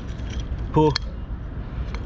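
Small clinks and a sharp click of glass and pebbles knocking together as a glass jar is worked loose from wet shingle, over a steady low rumble.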